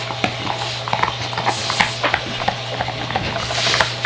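Two dogs chewing and tugging at an antler chew, with irregular clicks and knocks of teeth and antler.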